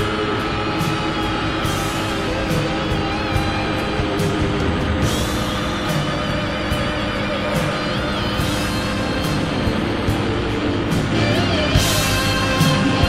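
Background music with a beat, growing louder and fuller near the end.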